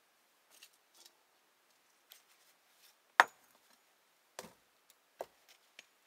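Loose stones knocking as they are handled and set in place by hand: a few scattered clacks, the loudest sharp knock about halfway through, then two more.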